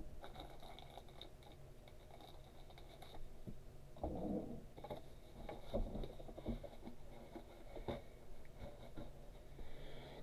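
Faint handling noise of trading cards and plastic card sleeves: soft rustles and a few light taps over a low steady room hum.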